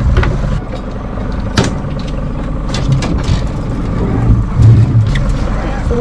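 Outboard motor running steadily at trolling speed, a low hum under the whole stretch, with several sharp clicks and knocks from handling gear in the boat.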